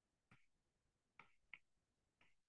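Faint, sharp clicks of a stylus tip tapping on a tablet's glass screen while handwriting: three taps, the last two close together.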